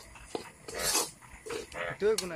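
A spatula scrapes in a wok about a second in, followed near the end by short dog barks.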